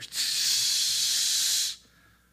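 A man hissing a long "sss" through his teeth in imitation of a sparkler fizzing; the hiss lasts about a second and a half, then stops.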